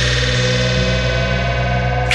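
Live techno: a steady electronic bass drone under sustained synthesizer tones, the treble filtered away, with one synth line slowly rising in pitch.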